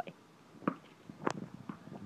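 A few faint taps and scuffs, with one sharp click a little past halfway, as a puppy dashes off across concrete after a thrown ball.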